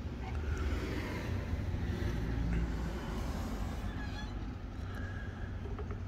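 Steady low outdoor background rumble with no distinct event standing out.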